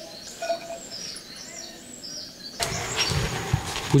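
Birds chirping softly over quiet outdoor ambience. About two and a half seconds in, a louder rushing background noise sets in with a few knocks.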